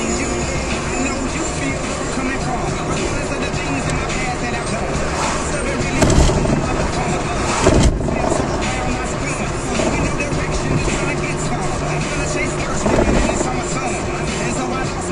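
Car radio playing music with vocals inside a moving car, over road and engine noise, with two louder low thumps about six and eight seconds in.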